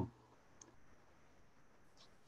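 Near silence, room tone over a video call, with a faint click about half a second in.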